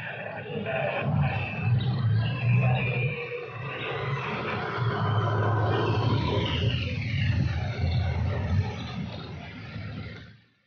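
Engine and tyre noise of an SUV driving up close.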